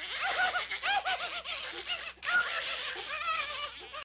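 Raspy cartoon duck voice squawking in rapid rising-and-falling bursts, with a brief break a little after two seconds.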